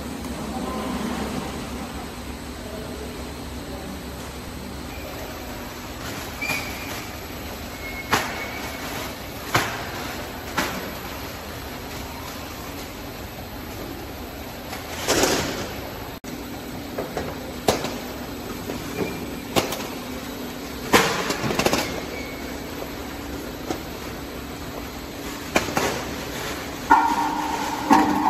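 Frozen-chicken conveyor and weighing line running: a steady machine hum with irregular sharp knocks and clatters, a couple of them louder, noisier bursts.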